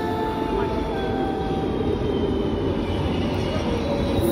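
Metro train running in alongside an underground station platform: a steady rumble with a faint whining tone that steps down in pitch about a second in, as the train slows.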